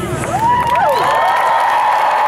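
Concert audience cheering and screaming as the song ends, with several high-pitched shrieks rising and falling in pitch over the crowd.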